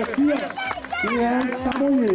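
A person's voice talking, with drawn-out syllables, over faint outdoor crowd noise.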